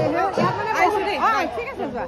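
Several people's voices talking over one another: group chatter.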